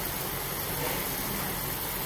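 Water boiling in a wok with instant noodles in it: a steady rushing, bubbling noise.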